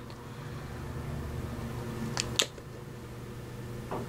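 Steady low hum of room background, with two light clicks a little past two seconds in.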